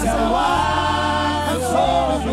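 Ghanaian gospel worship song performed live: a lead singer and a group of backing vocalists singing together in harmony over steady low bass notes that change pitch twice.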